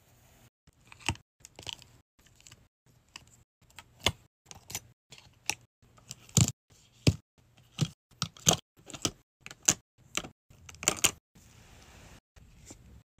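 Plastic makeup items (lip gloss tubes, pencils, compacts) clicking and tapping against each other as they are set into the compartments of a padded makeup case. The taps come irregularly, a few a second at the busiest, with the loudest in the second half.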